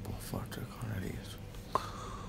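A low, faint murmured voice, then a single short, sharp click near the end.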